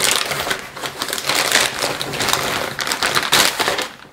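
A white plastic poly mailer bag crinkling and rustling loudly and continuously as hands pull it open.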